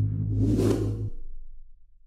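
Whoosh sound effect swelling up and fading out about half a second in, over a low steady drone. The drone cuts off a little after a second in and dies away.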